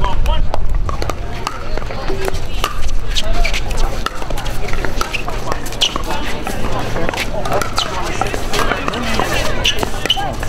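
Pickleball paddles hitting a hollow plastic ball back and forth in a doubles rally: a run of sharp pops, some close together, over a steady low rumble and crowd chatter.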